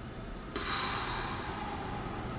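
A long, slow audible breath: a soft steady rushing with a faint thin whistle, starting about half a second in, taken as part of a deep-breathing relaxation exercise.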